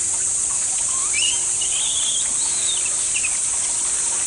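Baby monkey giving high-pitched calls: a rising squeal about a second in, a longer wavering call, then a short one near the end. A steady high hiss runs under it.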